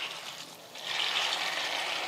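Water poured in a steady stream from a jug into a steel pot of puffed rice, soaking the rice. The pour grows louder a little under a second in.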